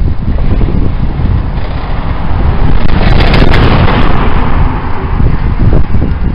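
Wind buffeting the microphone outdoors: a loud, rough low rumble, with a stronger gust of hiss about three seconds in.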